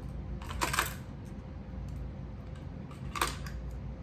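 Hard fishing lures being set into the plastic compartments of a tackle box tray: two short clacks of plastic on plastic, the first just under a second in and the louder, the second about three seconds in.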